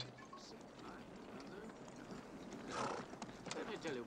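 Hoofbeats of riders' horses approaching, faint, with a few sharp clops in the last second.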